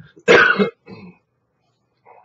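A man clearing his throat: one loud, harsh burst about a quarter of a second in, then a quieter one about a second in.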